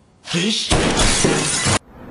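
A short shout, then a loud crash of glass shattering and breaking for about a second, cut off abruptly near the end.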